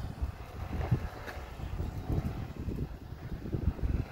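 Gusty wind buffeting the microphone in uneven low rumbles, over the faint hum of a LiftMaster LA500 swing-gate actuator driving the gate leaves open.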